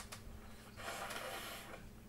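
A person blowing their nose once, a hissy blow of about a second starting near the middle, heard faintly from away from the microphone.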